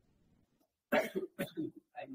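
A person coughing: a short run of coughs starting about a second in, the first the loudest, fading into weaker ones.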